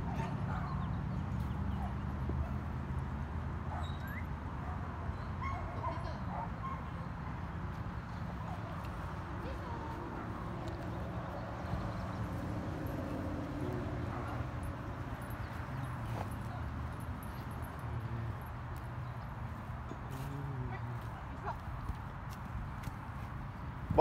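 Outdoor ambience: a steady low hum with faint, scattered distant voices and dog sounds over it.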